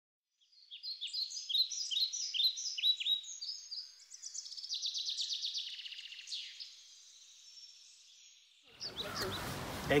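A songbird singing: a run of quick, repeated, downward-slurred high chirps, about three a second, then a fast high trill, fading out. Near the end, wind and outdoor noise cut in, followed by a man's voice.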